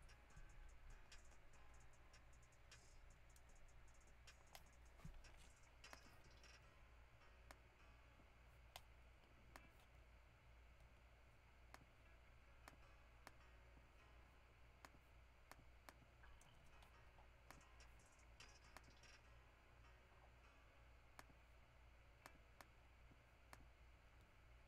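Near silence with faint, scattered computer-mouse clicks, roughly one a second, over a low steady hum.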